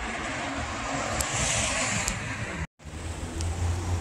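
A steady outdoor rushing noise with a low rumble, broken by a sudden brief dropout a little under three seconds in.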